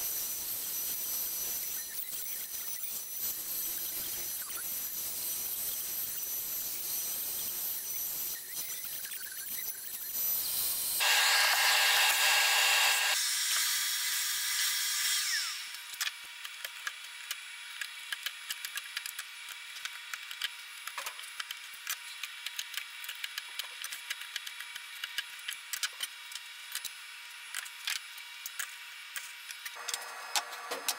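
ShopBot CNC router's spindle running and cutting into MDF, a steady noisy sound with a high whine. It grows louder for a few seconds just past the middle, then stops suddenly, leaving a quieter stretch of irregular sharp clicks and ticks.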